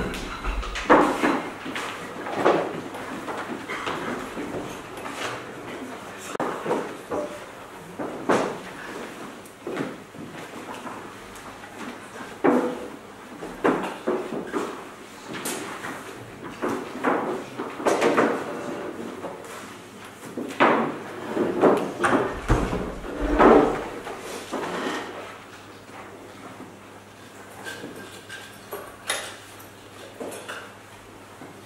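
Stage furniture being moved in the dark: scattered knocks, scrapes and bumps of chairs and a table being set down, with low voices. The bumps thin out over the last few seconds.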